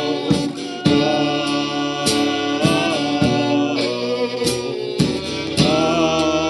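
Live acoustic band playing: strummed acoustic guitar and fiddle under a man singing.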